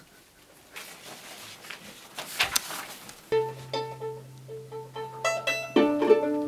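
Soft handling noise of sheets of music, then about three seconds in the string quartet starts playing: a long held low cello note under short, detached higher string notes.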